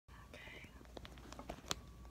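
A faint, breathy whisper-like sound from a person, followed by a few sharp clicks, the loudest near the end.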